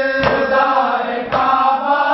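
Men chanting a Muharram noha lament on held, drawn-out notes, with chest-beating (matam): hand strikes on the chest land together about once a second, twice here.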